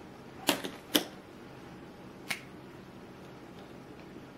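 Three short, sharp clicks, two close together about half a second and a second in and a third a little past two seconds: a clear plastic ruler and a dry-erase marker being set down on a hard surface.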